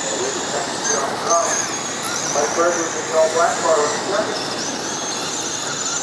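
Several 12T Mudboss RC dirt modified cars, run on 12-turn brushed electric motors, racing on a dirt oval: a high motor whine that rises and falls with the throttle over a steady hiss, with faint voices in the background.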